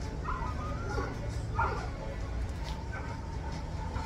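A dog whining in short, high yelps, twice, about a second apart, over steady background noise.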